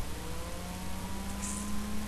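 A faint engine hum, slowly rising in pitch over a low background drone.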